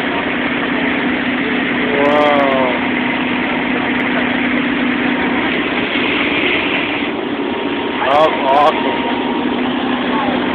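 The 1956 Chevy monster school bus's 350 small-block V8 idling with a steady hum. Short voice sounds come through about two seconds in and again near the end.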